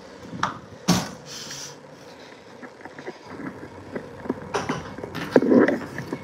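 Interior door hardware clicking and knocking as a door is pushed through, the sharpest knock about a second in. A few lighter clicks and knocks follow near the end.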